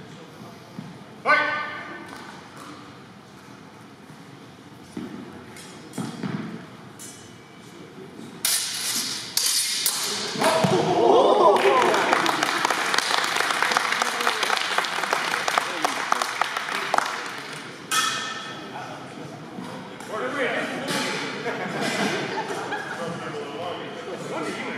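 Sparring weapons striking with a ringing ping about a second in, echoing in a gym. Then a crowd shouts and claps for about ten seconds, and a second ringing strike cuts in near the end of it.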